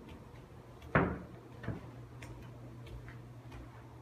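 A single thump about a second in, then a softer one, with faint scattered ticks over a low steady hum.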